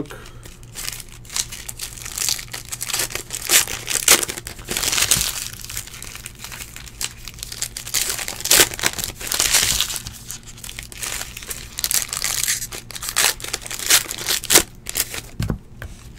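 Foil wrapper of a trading-card pack being torn open and crumpled by hand, in irregular bursts of crinkling.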